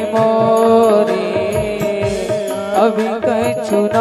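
A slow Hindu devotional bhajan: a male voice sings over held harmonium chords, with hand-drum beats underneath.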